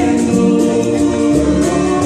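Live Latin American folk ensemble playing, with several voices singing together over upright bass, guitar, keyboard and congas.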